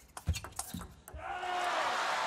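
A table tennis ball clicking off rackets and table in a fast rally, about five hits in the first second. Then crowd cheering and applause swell as the point is won, with a long shout held above it.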